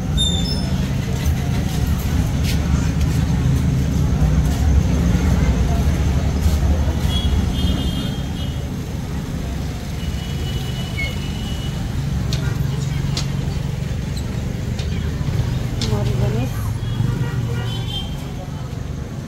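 Steady low rumble of street noise with indistinct voices in the background, and a few brief high-pitched tones about halfway through.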